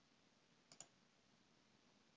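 Computer mouse button clicked, two quick clicks a little under a second in, against faint background hiss.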